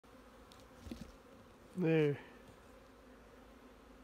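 Honeybees buzzing over an open hive, a steady low hum.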